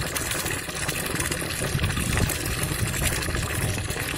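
A stream of tap water pouring into a filled tub, a steady splashing rush.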